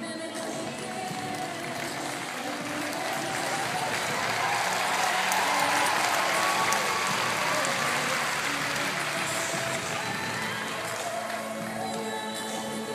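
An audience applauding, the clapping swelling to a peak mid-way and then dying away, over music playing throughout.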